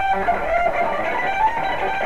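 Electric guitar (a Fender Stratocaster) playing a fast single-note lead phrase in B minor, the notes following one another rapidly and without a break.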